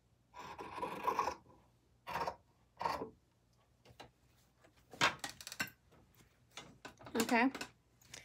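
Fabric shears cutting through quilting cotton: one longer cut near the start, then two short snips, then a few light clicks and the rustle of fabric being handled.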